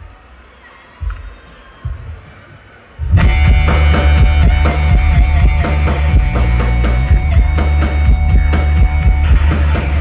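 A live rock band starts a song on electric guitars, bass guitar and drum kit. After two low thuds, the full band comes in suddenly and loud about three seconds in.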